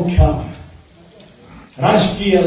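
A man giving a loud speech in Kannada into a microphone: a phrase ends about half a second in, there is a pause of about a second, and he starts speaking again near the end.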